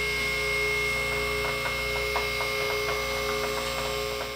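A car lift's electric pump motor runs with a steady whining hum as it raises the car. Faint regular clicks sound over it midway through.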